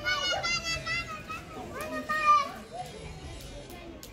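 Young children's high-pitched voices calling out and chattering, in short outbursts, loudest a little past two seconds in.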